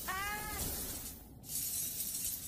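A short pitched cry like a cat's meow, rising then easing down over about half a second, followed by a steady hissing rush of spray-like noise that dips briefly and comes back.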